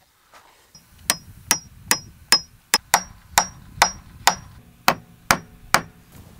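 A hammer striking a wooden pole fence rail, about a dozen blows at roughly two a second. The early blows carry a high metallic ring that dies away in the later ones.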